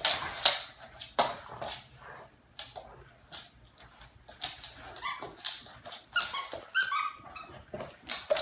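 A Rottweiler chewing and shaking a squeaky plush toy. The first second or so has a few loud, sharp sounds. Near the end the toy gives a quick run of short, high-pitched squeaks.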